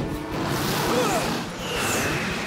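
Film sound effect of a cartoonish car blasting off: a loud rushing blast that swells just after the start, over orchestral film music, with a high steady whistle coming in near the end.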